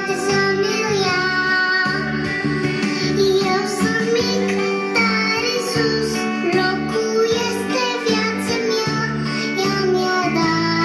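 A song sung in a child's voice over a steady beat, with plucked-string, guitar-like accompaniment.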